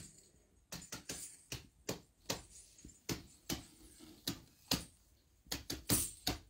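Light, irregular taps and clicks, about three a second, some with a brief ring.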